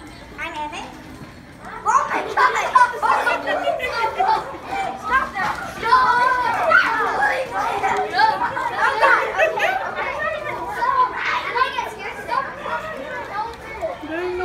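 Many children talking and exclaiming at once, a busy overlapping chatter that swells suddenly about two seconds in.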